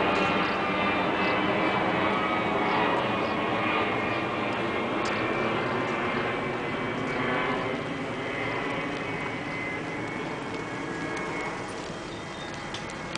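Boeing 747-200 jet airliner's four engines passing overhead: a steady engine noise with several whining tones in it, fading gradually as the aircraft moves away.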